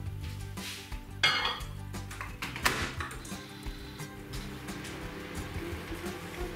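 A ceramic mug knocking and clinking as it is handled and set down, with two sharper knocks about a second in and just under three seconds in. Soft background music runs underneath.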